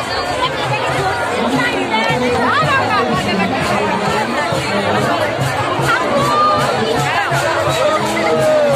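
A crowd of many voices talking and calling at once over music with a fast, steady beat of bright metallic strikes and a lower drum-like pulse.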